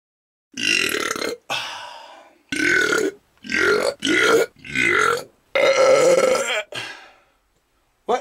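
A man voicing a series of about eight short vocal bursts into a studio microphone, each under a second long, with short gaps between them and no words.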